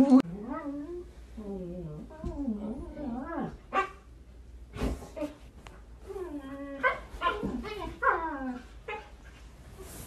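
Dogs whining and yowling in long, wavering calls that slide up and down in pitch: first a husky, then, after a sharp click about five seconds in, a second run of whines and moans.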